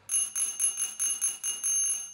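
Electric doorbell ringing: a bright, trilling metallic ring that stops near the end.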